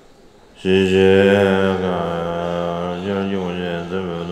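Low male voices chanting a Tibetan Buddhist prayer verse on a steady, held pitch, starting suddenly about half a second in.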